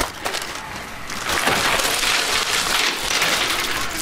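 Crinkly rustling and crunching of a bag of Goldfish crackers as a hand digs in and grabs a handful, swelling about a second in and easing off near the end.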